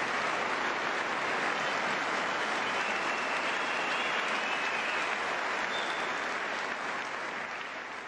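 A large audience applauding steadily, the clapping tapering off near the end.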